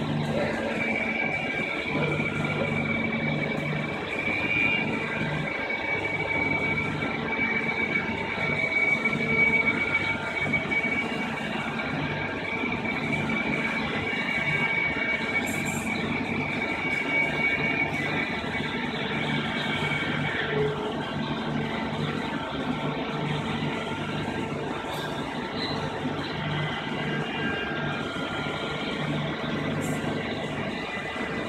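AWEA LP4021 bridge-type CNC vertical machining centre running, with a steady low hum and a steady high whine that stops about two-thirds of the way through.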